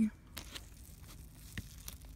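Faint crinkling and rustling of a paper sandwich wrapper as the sandwich is handled and pulled open, with a few short crackles.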